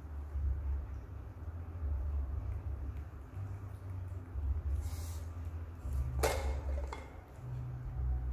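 A low, uneven rumble throughout, with a brief rustle about five seconds in and one sharp clack with a short ring about a second later, as of a hard object knocked or set down.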